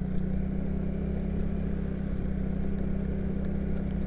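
Motorcycle engine running steadily at a light cruise, a constant low hum with no revving, heard from a camera mounted on the bike.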